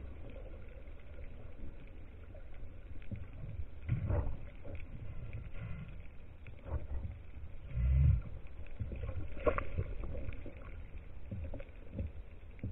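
Underwater sound picked up by a camera on a speargun: a steady low water rumble with scattered clicks and knocks, the loudest a low thump about eight seconds in.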